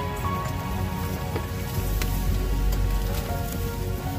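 Ambient background music of slow, held tones over a steady hiss, with a low rumble coming in about halfway through.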